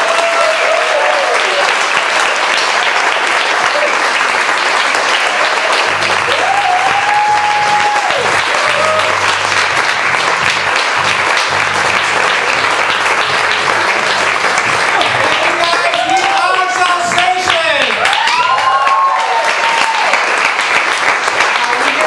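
Theatre audience and cast applauding and cheering, with whoops rising above the clapping now and then. Music with a low beat comes in under the applause about six seconds in.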